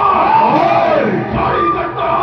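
A bhaona stage actor's long shouted cry, rising and then falling in pitch over about a second, with crowd voices and music behind it.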